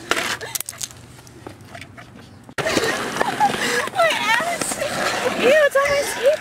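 A skateboard knocking and rolling on concrete, with a few sharp clacks. About two and a half seconds in, the sound cuts abruptly to people's voices calling and talking loudly.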